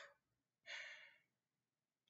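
Two faint breaths from a man pausing between sentences, one just at the start and one just under a second in; otherwise near silence.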